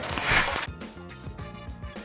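A short swoosh transition effect in the first half-second, loud and noisy, then background music with a steady beat.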